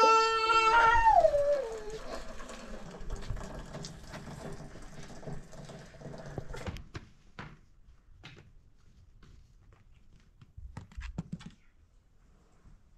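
A young child's drawn-out whining cry, held and then sliding down in pitch, followed by hot water being poured from a kettle into a teapot and a few light clinks and knocks near the end.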